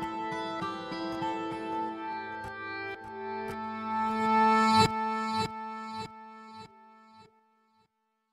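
Sampled 12-string acoustic guitar playing ringing plucked notes, with its loudest strum about five seconds in, then a few single notes that fade out, leaving silence near the end.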